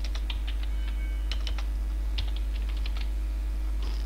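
Typing on a computer keyboard: irregular key clicks, over a steady low electrical hum.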